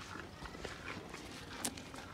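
A cow tearing and chewing fresh green leaves held out by hand: irregular crisp crunches and rustles, with one sharp click about one and a half seconds in.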